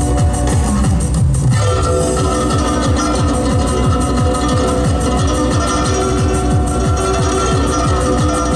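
Guzheng plucked live, amplified over an electronic dance backing track with a fast, steady bass-drum beat; sustained synth chords come in about two seconds in.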